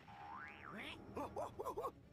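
Cartoon-style sound from the anime's soundtrack: a pitch that slides up and back down, then four quick springy up-and-down calls.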